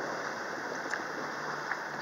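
Steady rush of water and wind aboard a sailboat under way, with a faint low hum underneath.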